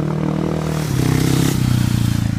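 Small junior speedway motorcycle engine running as the bike rides past on the dirt track. Its pitch drops about a second in, then holds steady.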